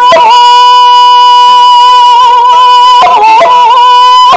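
A woman's shigin chant: one long high note held with slight wavering, dipping briefly about three seconds in before being held again.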